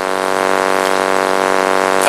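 A steady, loud buzzing hum with many evenly spaced overtones, unchanging in pitch and level, of the kind an electrical fault or ground loop puts into a sound system or recording.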